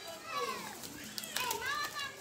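Faint, distant voices of children talking and calling, with a few light ticks about halfway through.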